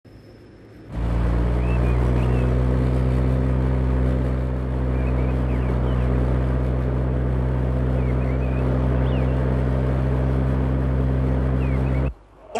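Car engine idling steadily, starting suddenly about a second in, with a few short high chirps above it.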